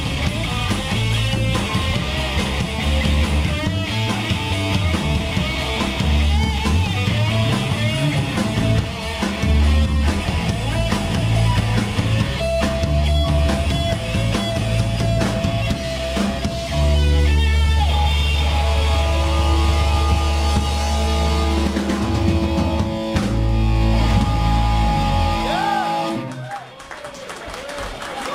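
Live punk rock band playing an instrumental stretch of a song on electric guitar, bass guitar and drum kit. The song ends about 26 seconds in and the sound falls away to a ringing tail.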